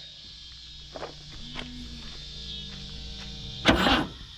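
A starting attempt on a 1983 AMC Eagle SX/4 running on a weak battery: a faint steady hum with a couple of light clicks, then one short, loud clunk near the end.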